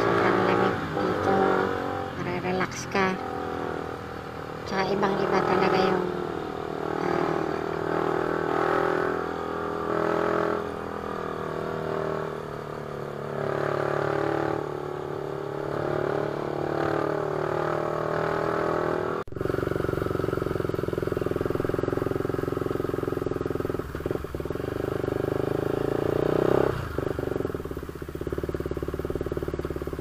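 Sport motorcycle engine running at low speed while riding slowly, with a sudden cut about two-thirds of the way through, after which the engine note is steadier.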